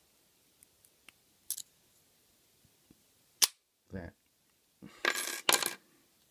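Small metal lock-picking tools clicking faintly in the keyway of a Yale padlock. A single sharp metallic click comes about three and a half seconds in, then near the end a short spell of dense metallic clinking and rattling as the brass padlock is handled.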